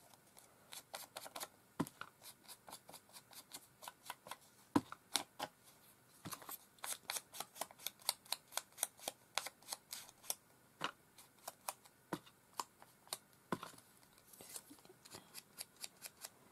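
Rapid, irregular small clicks and clacks of hands working with craft tools and small wooden stamps on a desk, several a second.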